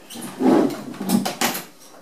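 Joovy Nook folding high chair being pulled open from its folded state: its plastic and metal frame clunks, then gives a quick run of sharp clicks a little after a second in.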